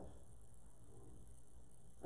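Quiet room tone with a faint, steady low hum and no distinct sound.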